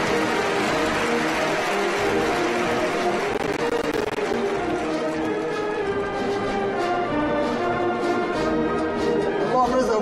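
Ceremonial band music with held brass chords, and a light regular beat of ticks coming in about halfway through.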